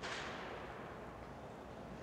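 Faint steady hiss with a slight swell at the start: background noise in a pause between speech.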